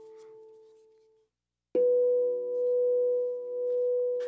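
Steel tongue drum notes: an A ringing on fades away in the first second, and after a brief silence a single tongue is struck and rings on B4, its sustain slowly wavering in loudness.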